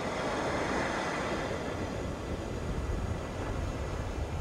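Steady rushing noise with no voice or music, from the ambient opening of the K-pop music video's soundtrack as it plays back.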